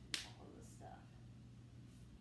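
A single sharp click or snap just after the start, over a faint low steady hum; the rest is quiet.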